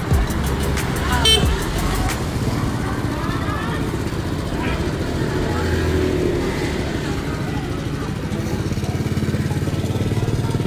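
Motor scooter engine running in street traffic, with voices in the background.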